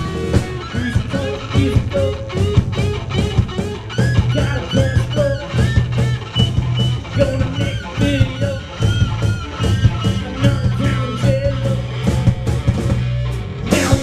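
Live rock band playing an instrumental passage loud: an electric guitar lead with repeated bent notes over bass guitar and a steady drumbeat. A loud crash comes near the end.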